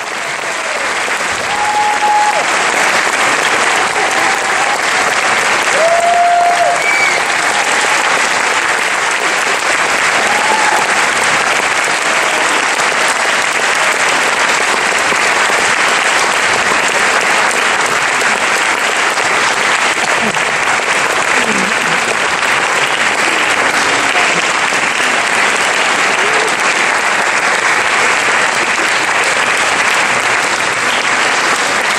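Theatre audience applauding, swelling over the first couple of seconds and then holding steady, with a few voices calling out over it in the first ten seconds or so.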